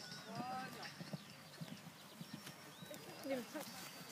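Hoofbeats of a horse galloping on grass.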